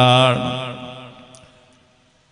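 A man's voice chanting one long held note that fades away in echo over about a second and a half.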